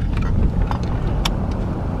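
Ford Bronco driving slowly, heard from inside the cabin: a steady low engine and road rumble.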